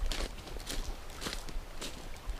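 Footsteps on a gravel track, four even steps about half a second apart.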